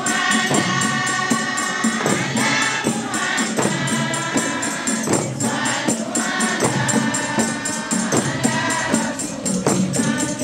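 Women's choir singing a song in harmony, over a steady rattling percussion beat of about four strokes a second.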